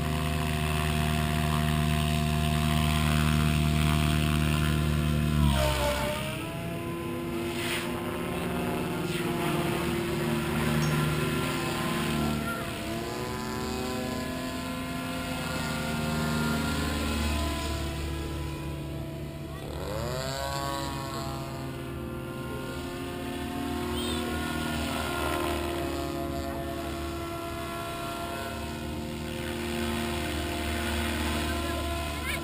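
Goblin 700 radio-controlled helicopter flying, its rotor and motor making a steady pitched whine. The pitch sweeps down and back up twice, about six seconds in and again around twenty seconds in.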